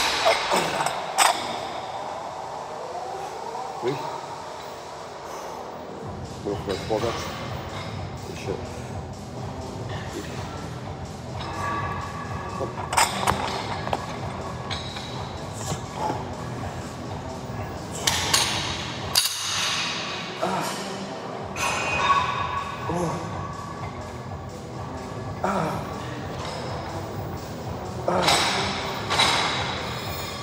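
Gym background of music and indistinct voices, with metal dumbbell plates clinking sharply as dumbbells are picked up near the start.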